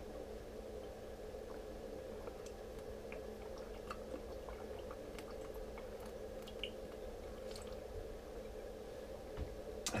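Faint swallowing and small wet mouth sounds as a man drinks water from a glass bottle, with a few light ticks scattered through, over a steady low room hum.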